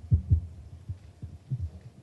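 A run of irregular, dull low thumps and bumps, loudest in the first half-second and then spaced a few to the second.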